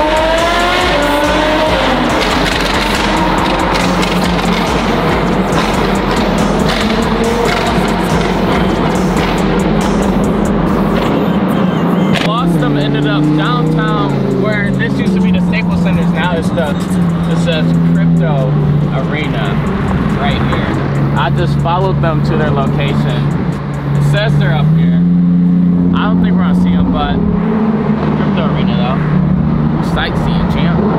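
A Lamborghini's engine revving up as the car accelerates at the start. After that, a song with a deep bass line stepping between held notes and vocals plays over the car's running noise.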